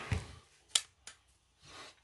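Handling of a Kansept Kyro folding knife and a digital pocket scale, with one sharp click about three-quarters of a second in and a fainter click soon after, amid faint rustling.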